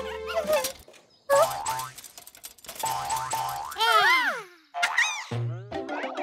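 Cartoon background music with comic sound effects: a cluster of falling pitch glides about four seconds in and a short rise-and-fall glide near five seconds.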